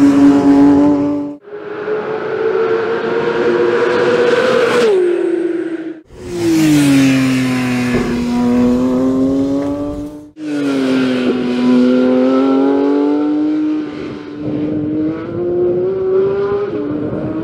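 2023 Porsche 911 GT3 RS's naturally aspirated 4.0-litre flat-six running hard on track, heard in several passes joined by abrupt cuts about 1.5, 6 and 10 seconds in. In each pass the engine note falls as the car goes by, then holds steady or climbs as it accelerates away.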